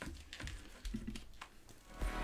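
Faint clicks and rustles in a quiet small room, with a brief low sound about a second in.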